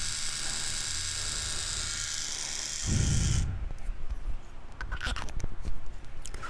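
Small handheld electric shaver buzzing steadily close to the microphone, switched off about three and a half seconds in with a bump of handling. Light clicks and rustles of handling follow.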